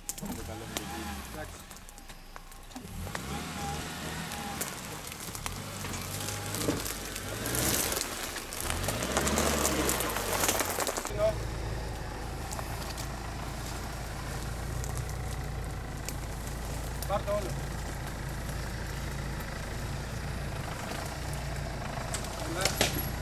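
A Suzuki Jimny's engine is revved up and down several times while the vehicle works over rough forest ground, with a burst of loud scrabbling noise just before the middle. After a cut, a Jeep Cherokee's engine idles steadily.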